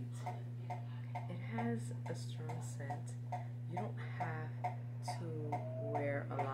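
A steady low hum under a regular light ticking, about four ticks a second, with a voice murmuring briefly a few times.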